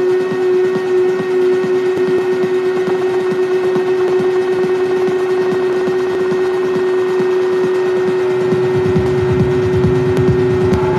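Raw electronic synthesizer jam on a Behringer TD-3 and a Cre8audio West Pest: a steady held drone tone over a fast pulsing sequenced bass line. About eight and a half seconds in, a deeper rumbling low end joins.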